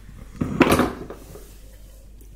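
A metal fork clinking and scraping on a ceramic plate while picking up a piece of food, one brief loud clatter about half a second in.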